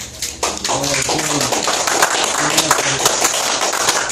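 A small group applauding, the clapping breaking out about half a second in, with people's voices heard over it.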